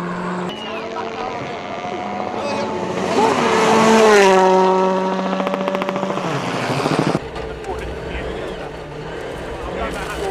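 Volkswagen Polo R WRC rally car on a gravel stage at full throttle. Its 1.6-litre turbocharged four-cylinder engine note climbs and falls in pitch through gear changes, loudest about four seconds in, with gravel spraying. It changes abruptly about seven seconds in to a lower rumble.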